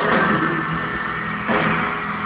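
Live piano ballad sung by a male singer in an arena, recorded from the audience. A noisy wash lies over the music and swells at the start and again about one and a half seconds in.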